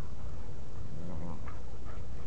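Two dogs play-fighting, one giving a short low growl about a second in, over a steady low rumble.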